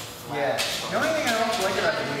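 Indistinct voices in the room, with a high-pitched voice rising and falling from about half a second in.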